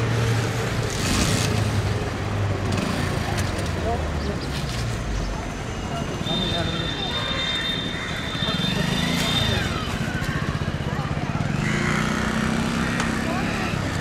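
Busy street noise: a vehicle engine running close by with traffic around it, and people's voices talking in the background. A high steady tone sounds for a few seconds in the middle.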